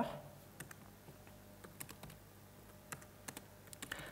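Faint, irregular keystrokes on a computer keyboard as a line of code is typed.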